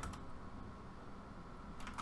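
Quiet room tone with a faint steady hum, and a couple of faint clicks from working the computer, one near the start and one near the end.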